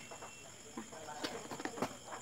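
A single quietly spoken word with a few light handling clicks, about a second and a quarter in and near the end, over a steady high hiss from the recording.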